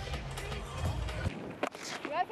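Music over stadium background. After a cut, a single sharp crack of a cricket bat striking the ball comes near the end.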